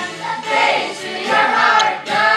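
A group of children singing together in chorus.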